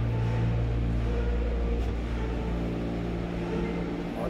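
Steady low mechanical hum of a gondola cable car's station drive machinery, heard from inside the cabin as it is carried through the boarding station.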